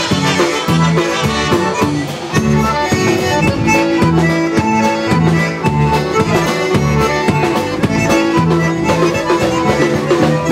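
Live polka band playing an instrumental passage, led by piano accordion and Chicago-style concertina over drum kit and bass guitar, with a steady oom-pah beat.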